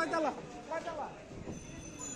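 A person's voice calling out loudly in two short bursts in the first second, over the steady background noise of a busy market street.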